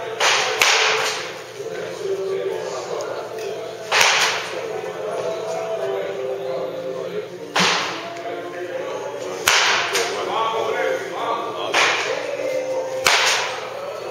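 A baseball bat swung at balls on a batting tee about six times, every two to four seconds, each swing a short sudden hit.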